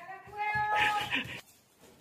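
A small child imitating a cat's meow: one drawn-out, high meow-like call lasting about a second.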